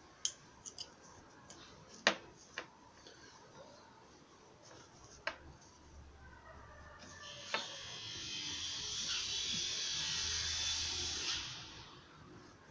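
Sharp clicks and taps of cloth-padded pliers working at the metal trim of a car door's window sill, the loudest about two seconds in. From about seven seconds comes a scraping that holds for about four seconds, as the old outer window scraper strip is worked loose along the sill.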